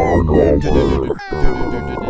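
Multitracked a cappella voices imitating a metal band's instruments: dense vocal layers with a pitch slide in the first second, a short break and a sharp hit about one and a half seconds in, then several held notes.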